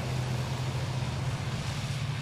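An SUV driving slowly past on a slushy, snow-covered road: a steady low engine hum under an even hiss of tyres on wet snow.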